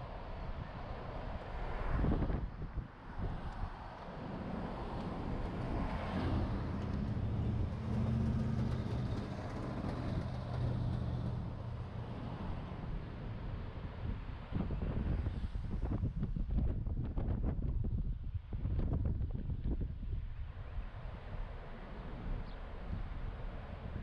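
Road and traffic noise heard from a moving car, with wind buffeting the microphone. A steady low engine hum stands out for several seconds in the middle, and rough, gusty bursts come about two seconds in and again late on.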